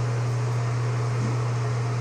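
Steady low hum with an even hiss of background noise, unchanging throughout.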